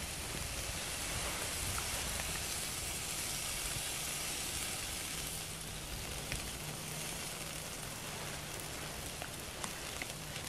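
Pork spareribs sizzling on a wire grill over an open wood fire: a steady hiss with a few small crackles from the burning wood.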